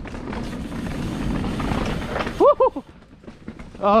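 Mountain bike rolling fast down a dirt forest singletrack: a steady rushing noise of tyres on dirt and wind that drops away sharply about two seconds in. The rider then lets out two quick rising whoops.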